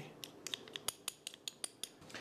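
A small spoon clicking and scraping against a tablespoon, working the last of the honey off it: about a dozen light, irregular clicks.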